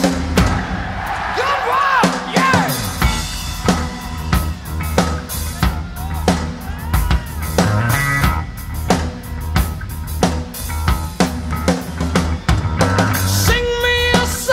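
Heavy metal band playing live: a drum kit beating steadily with kick and snare over a continuous low bass line.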